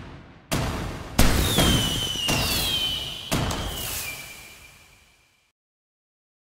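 Edited-in sound effects: three sudden hits, each dying away, with a thin high whistle that glides downward in pitch, all fading out about five seconds in.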